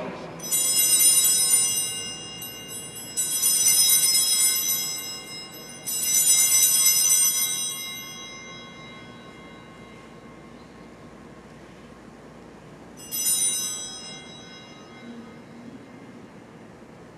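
Altar bells rung at the elevation of the chalice during the consecration. There are three bright, shimmering rings about two seconds each, close together, then a shorter fourth ring about thirteen seconds in.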